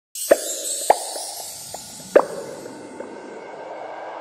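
Sound-design effects for a promo intro: three sharp pitched pops, a few fainter ticks between them, over a high hiss that fades away.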